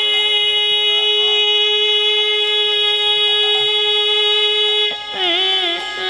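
Male kirtan singer holding one long, steady note for about five seconds, then breaking into a wavering, ornamented phrase, over a sustained accompanying drone.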